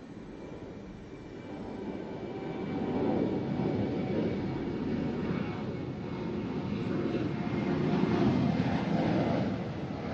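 Jet aircraft engine noise with a faint steady whine, growing louder over the first few seconds and staying loud.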